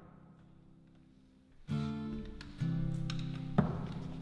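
Acoustic guitar playing the opening chords of a song: a faint held chord, then two loud strummed chords about a second apart, and a sharp percussive hit near the end.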